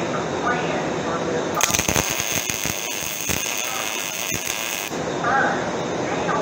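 MIG welding arc crackling and sizzling as a bead is laid, starting about a second and a half in and cutting off suddenly near five seconds, over steady shop noise.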